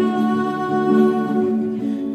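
A woman's voice holding one long note, with her own acoustic guitar accompanying underneath; the note breaks off just before the end.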